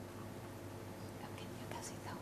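Hushed, low voices exchanging a few quiet words, over a faint steady electrical hum.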